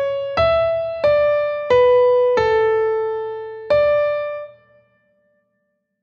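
Piano playing measures 13 and 14 of a melodic dictation exercise: a single-line melody of six struck notes. It steps up, then down to a longer held low note, and closes back up on a note that rings and fades out near the end.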